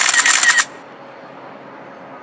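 A half-second burst of digital glitch and static, an editing sound effect, that cuts off sharply, followed by a faint steady hiss of room tone.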